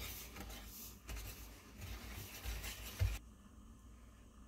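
Wire whisk stirring brown sugar and dry spices in a metal bowl: soft, irregular scratching and scraping with a few light knocks. It stops abruptly about three seconds in.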